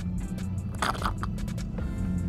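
Background music with steady low notes, under small mouth noises of someone sipping a drink through a straw, with a short noisy slurp about a second in.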